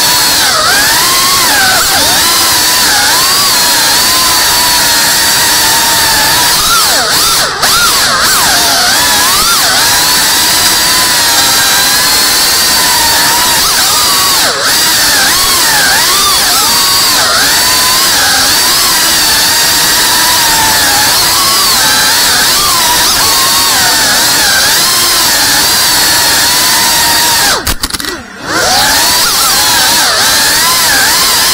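3.5-inch cinewhoop FPV drone's motors and propellers whining, the pitch rising and falling constantly with the throttle as it manoeuvres. The sound drops away for a moment near the end, as the throttle is cut, then comes back.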